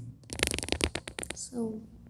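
Handling noise from a handheld microphone being moved: a quick run of clicks and rustles for about a second, then a brief murmur of voice.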